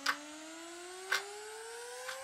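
A slowly rising synthesized tone, a sound-effect riser, with a sharp tick about once a second, in step with an on-screen countdown clock.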